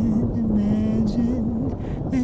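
A woman's voice humming a slow, low melody, holding long notes with small turns, over a recorded rain-and-thunder track with a steady low rumble.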